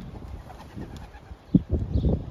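Racing pigeons cooing close by, in short low calls, with a loud low thump about one and a half seconds in.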